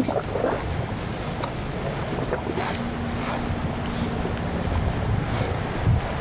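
Wind blowing across an action camera's microphone: a steady rushing noise with low buffeting. A faint steady hum sounds under it for a couple of seconds in the middle.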